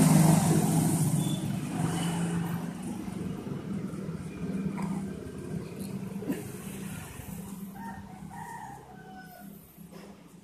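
A motor vehicle's engine hum, loud at first and fading steadily away. A rooster crows near the end.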